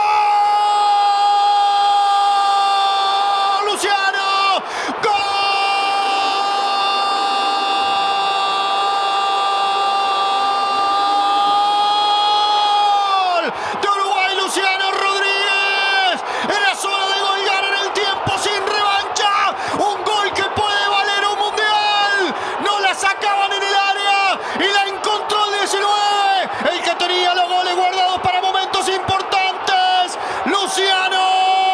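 Football commentator's goal call: one long held 'gooool' scream at a single high pitch for about the first thirteen seconds, with a brief catch around four seconds in, then a rapid run of short excited shouts.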